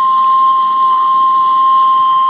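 Steam whistle of a kue putu vendor's steamer: one loud, steady, high whistle held on a single note.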